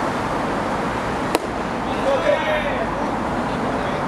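A single sharp crack of a baseball striking the bat or the catcher's mitt about a second and a half in, followed by players' brief shouts, over a steady background hum.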